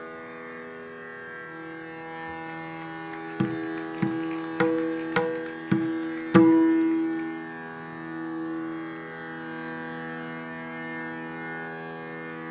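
Steady drone of tanpuras setting up a Hindustani raag, with six sharp plucked-string notes about half a second apart in the middle. The last of them is the loudest and rings on longest.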